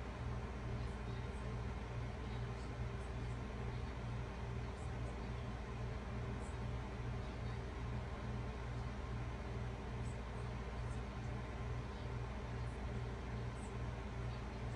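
Steady low electrical hum and hiss with a faint, regular pulsing, about three pulses a second, and a few faint ticks.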